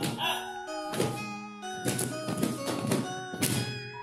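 Several dull thuds of blows landing on someone covered with a blanket, over background music with held, stepping notes.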